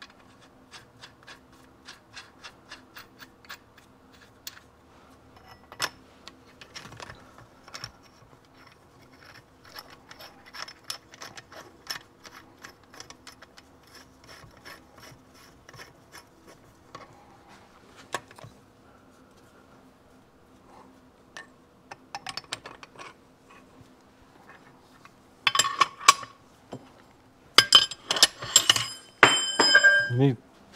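Small metal clicks and ticks as a crankshaft installer's threaded rod is screwed onto the crankshaft end, followed near the end by louder metal clanks and rings as the tool's steel body is fitted against the engine case.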